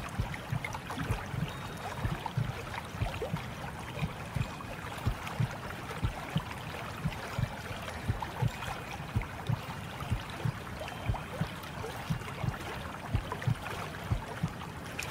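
Flowing, gurgling water with soft low thuds coming several times a second at uneven intervals.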